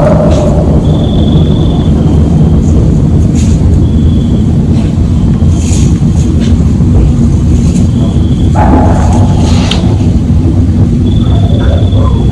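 Heavily amplified outdoor field recording: a loud, steady low rumble and hiss, with short, thin, high-pitched tones recurring every few seconds, a few faint clicks, and a held mid-pitched tone of about a second and a half a little past eight seconds in.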